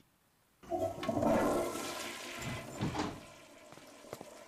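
A toilet flushing: a rush of water that starts about half a second in and dies away over the next three seconds.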